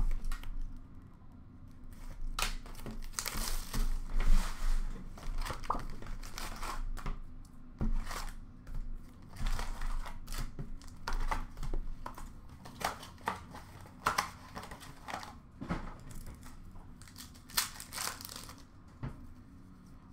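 Wrapping and cardboard of a 2020-21 Upper Deck hockey card box being torn and crinkled open, with irregular rips and rustles as the box is unwrapped and its packs pulled out.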